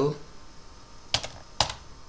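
Two keystrokes on a computer keyboard, a little past a second in and about half a second apart, typing a LaTeX \label command.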